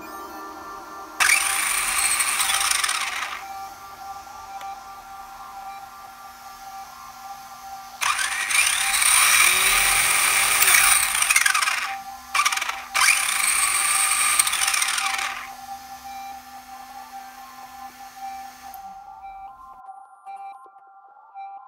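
Tamiya DB-02 buggy's GoolRC 4-pole brushless motor and four-wheel-drive drivetrain spinning the wheels up on a stand in three bursts: a short one about a second in, then two longer runs near the middle separated by a brief break. Steady background music runs underneath.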